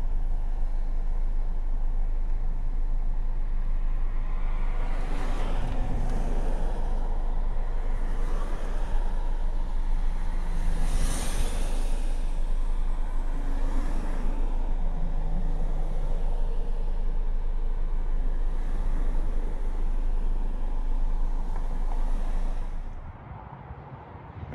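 Street traffic on a busy road: several vehicles swell and fade as they pass, over a steady low rumble of wind buffeting the microphone. The sound cuts off shortly before the end.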